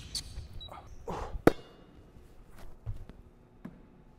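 A basketball bouncing on a hardwood court a few times, sharp thuds that echo in a large empty arena. The loudest comes about a second and a half in.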